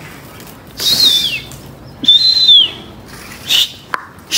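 A person whistling twice, high and shrill, each whistle held and then falling in pitch, to call flying pigeons down onto their perch. A short hiss follows near the end.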